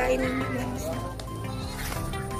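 Background music with a goat bleating from the pen.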